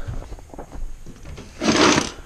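A wooden cabinet drawer sliding open, heard as a short scraping rush near the end, after a second or so of faint handling rustle.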